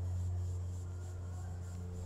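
Cloth rustling and scratching as a dark jacket is pulled on, over a steady low hum.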